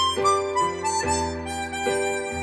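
Chromatic harmonica (a Hohner 280-C Chromonica) playing a melody phrase of short notes that step downward, over a backing accompaniment of sustained chords and bass notes that change about a second in.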